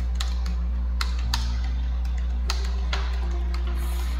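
Computer keyboard typing: scattered, irregular key clicks, about eight in four seconds. Under them runs a steady low hum, with soft, low sustained notes of background music.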